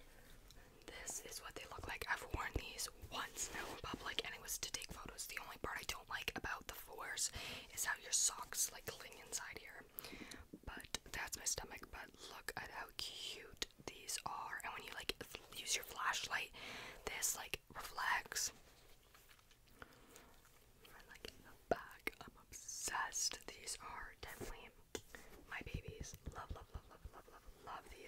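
A woman whispering close to the microphone, with a pause of a few seconds about two-thirds of the way through.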